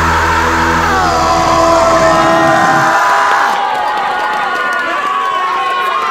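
A rock band's last held chord, with a pitched line sliding downward, rings on and stops about halfway through. The audience then cheers and claps, with shouts.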